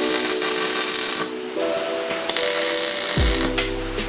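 MIG welder arc crackling in two bursts of about a second and a half each, welding joints on a steel tube frame. Background electronic music plays throughout, its heavy bass and beat coming in near the end.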